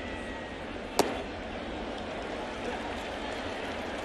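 A single sharp pop about a second in as a 97 mph four-seam fastball smacks into the catcher's leather mitt, over the steady murmur of a ballpark crowd.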